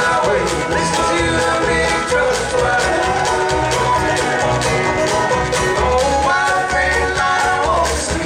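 Bluegrass string band playing live: banjo and mandolin picking over a bass line, with two men singing together.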